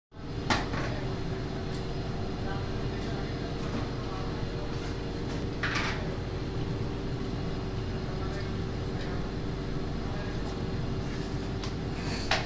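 A metal spoon knocking and scraping against an aluminium saucepan as minced chicken salad is stirred: a sharp clink about half a second in, a longer scrape near six seconds, and a few fainter taps. Underneath, a steady low electrical hum.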